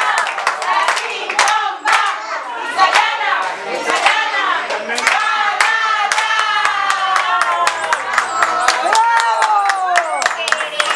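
A small group of people clapping their hands in a steady rhythm, with several voices singing and calling out over the claps, some notes drawn out near the end.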